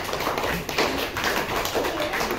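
A class of schoolchildren clapping together: a dense, uneven patter of many hand claps.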